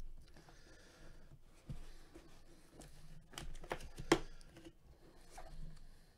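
A cardboard box being handled and opened by gloved hands: paper and cardboard rustling, with a few sharp knocks and scrapes between about three and a half and four seconds in.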